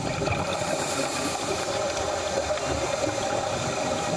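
A steady rushing noise with faint humming tones under it, holding level throughout.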